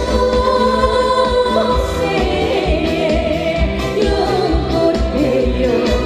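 A woman singing into a microphone over musical accompaniment with a pulsing bass, holding long notes, the first for about two seconds.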